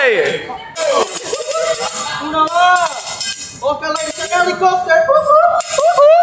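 Hibachi chef singing in a loud, wavering voice at the teppanyaki griddle, with metal clinks from his spatulas.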